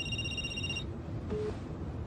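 Mobile phone ringtone: a steady high electronic tone that stops less than a second in, answered, over the low running rumble of a car cabin.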